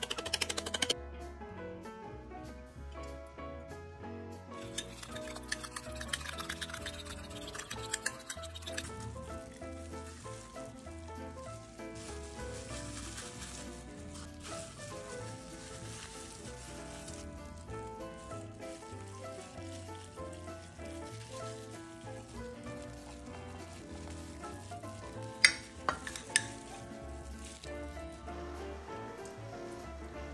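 Background music with a steady beat over kitchen prep handling noises: a hissing rustle for several seconds, then a few sharp clicks about 25 seconds in.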